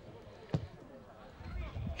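A single sharp thud of a football being kicked hard on a goal kick, about half a second in.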